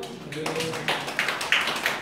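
Irregular light taps and clicks, with brief voices in between.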